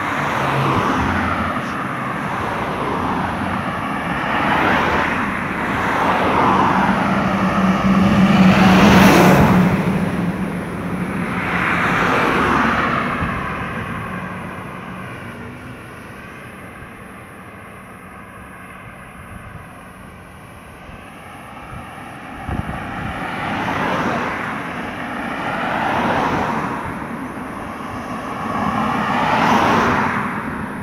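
Cars passing one after another on a paved road, each one swelling up and fading away in tyre and engine noise. The loudest passes about nine seconds in with a low engine hum. A quieter lull follows in the middle, then more cars pass near the end.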